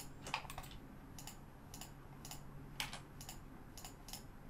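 Faint, irregular clicking of a computer keyboard and mouse buttons, about a dozen clicks in four seconds.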